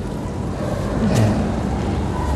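A pause between a man's sentences, filled by a steady low rumble of background noise picked up by the microphone, with one short vocal sound about a second in.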